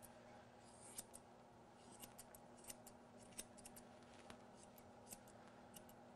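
Faint, irregular snips of grooming shears cutting through a Shih Tzu's long ear hair, a few small clicks a second.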